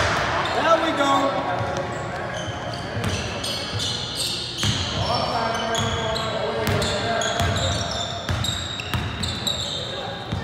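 Basketball being dribbled on a hardwood court, its bounces irregular, with many short high squeaks of sneakers on the floor and players' voices calling out.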